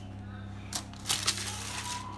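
Crinkling and rustling of a plastic sheet under hands crimping and pressing the edge of a pastry pasty, a cluster of short crackles in the second half, over a steady low hum.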